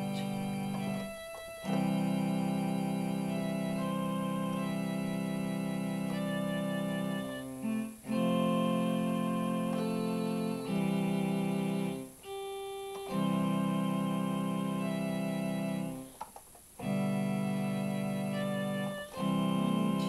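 Portable electronic keyboard played with sustained, steadily held chords and melody notes, changing every few seconds, with brief breaks between phrases.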